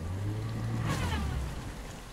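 Toyota RAV4's engine revving hard in reverse while the car is stuck in a deep, flooded ford: a low, steady drone that eases off about a second and a half in, over a wash of churning water.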